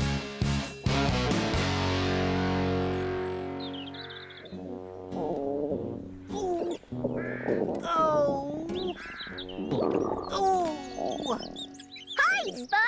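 Closing music ending on a held chord that fades out over the first few seconds, followed by a run of short, pitched, gliding cartoon calls that swoop up and down with brief gaps between them.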